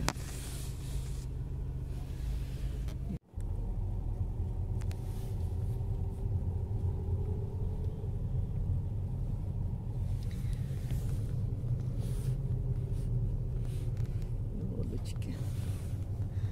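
Steady low rumble of a car driving, engine and road noise heard from inside the car. The sound cuts out for a moment about three seconds in.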